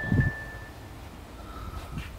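Quiet outdoor ambience with a low rumble and a short low thump at the start. Two faint, thin, steady whistle-like tones: a higher one held for about half a second, then a lower one near the end.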